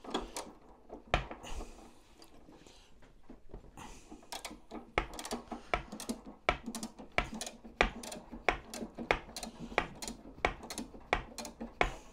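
Socket ratchet clicking as it winds up a jack to raise the tank off the bench. The clicks come singly in the first few seconds, then settle into a quicker run of about three a second from about four seconds in.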